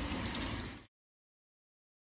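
Steady hiss of rain falling, with a few faint ticks, fading out within the first second into dead silence.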